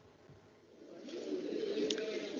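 Faint room tone, then about a second in, the sound of a Welsh Parliament (Senedd) plenary session recording begins playing over shared computer audio: a low murmur of voices in the debating chamber, growing louder.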